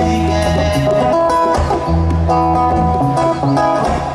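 Live acoustic music in an instrumental passage: a picked acoustic guitar over held low bass notes that change every half second or so.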